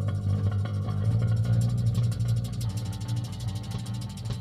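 Improvised bass-and-drums music played live. Low sustained bass notes run throughout, and about a second in a fast, dense rattling texture of rapid ticks comes in over them.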